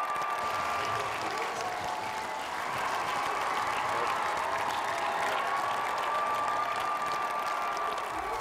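Audience applauding steadily, with a faint steady high tone underneath at the start and again in the second half.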